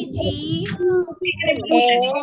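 Young children's voices chanting in pitched, sing-song phrases through a video call, with a brief break a little after one second.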